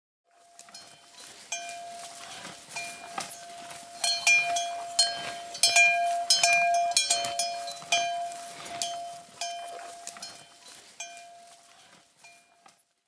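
Small metal bells clinking and ringing irregularly over a steady ringing tone. The sound fades in at the start, is loudest in the middle, and fades out near the end.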